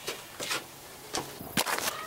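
A series of about five sharp cracks or knocks, irregularly spaced, two of them close together near the end.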